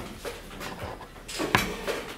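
A man breathing audibly close to the microphone in a pause between phrases of speech, with a short click about one and a half seconds in.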